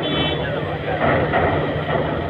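Crowd of many people talking at once over a steady low engine hum, with a brief high-pitched beep right at the start.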